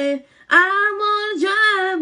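A woman singing unaccompanied. There is a brief break for breath about a quarter of a second in, then she sings held notes that bend in pitch.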